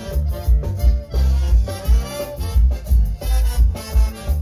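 A live band playing upbeat Latin dance music, with a strong bass beat about twice a second under the melody.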